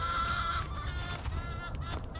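A chicken giving one long, drawn-out call that tails off about a second in.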